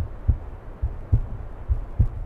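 Low, dull thuds in lub-dub pairs, a little more than one pair a second, like a slow heartbeat pulse under a faint hiss.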